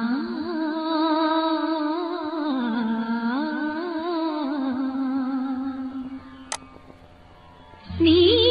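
Old Malayalam film-song recording: a wordless hummed melody over soft accompaniment, wavering and gliding slowly, then settling on a held low note. A short click comes about two-thirds of the way in, and the full song comes in louder right at the end.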